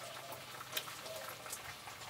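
Faint crackling of tortillas frying in hot oil, with a few sharper pops.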